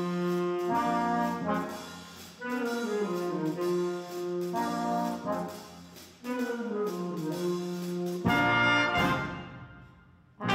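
School band with trumpets, trombones and saxophones playing in a gymnasium: phrases of falling notes settling into held chords about every two seconds, then a louder full chord near the end that dies away.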